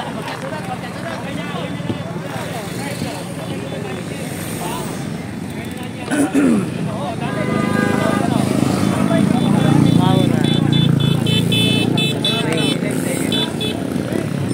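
Voices of people talking, with a motorcycle engine running close by that grows louder in the second half. A run of short high beeps follows near the end.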